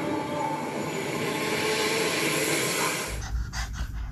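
Film soundtrack playing from a screen: a loud, steady rushing noise with faint thin tones running through it. It cuts off suddenly about three seconds in, leaving a low hum and a few light clicks.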